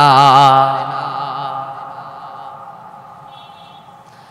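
A man's chanted, drawn-out note with a wavering vibrato, sung into a microphone, breaking off about half a second in. Its echo then dies away slowly over the next few seconds.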